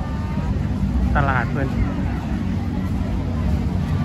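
A steady low rumble, wind buffeting the handheld microphone, runs under the faint chatter of a large outdoor crowd. A voice speaks briefly about a second in.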